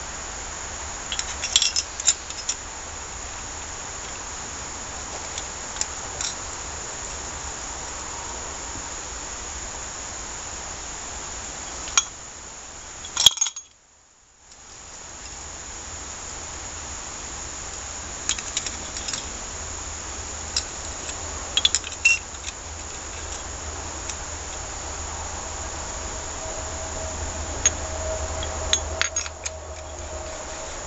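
Scattered light metallic clicks and clinks of small pump parts being handled and set down on a workbench, over a steady background hiss. The clinks come in small clusters about a second in, around the middle, and in the last third, and the sound drops out for about a second near the middle.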